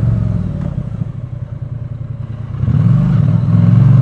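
Triumph Bonneville T100's parallel-twin engine on the move. It dies down to a quieter rumble for a couple of seconds, then pulls strongly again from near three seconds in, the revs rising.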